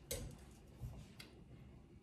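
Quiet room tone with a few faint, separate clicks, about a second apart.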